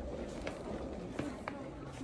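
Background chatter of shoppers in a busy shop, with two light clicks about a second and a half in.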